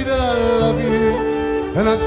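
Live folk music: a man singing one long held note over a plucked string instrument, then sliding up in pitch into the next phrase near the end.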